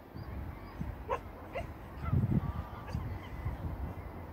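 Two short animal calls about half a second apart, each rising quickly in pitch, over a low rumble of wind on the microphone that swells loudest in the middle.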